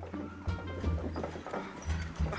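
Wind buffeting the camera's microphone in uneven low gusts, with footsteps knocking on the wooden planks of a suspension footbridge.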